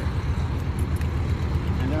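Road traffic: a steady low rumble of passing cars.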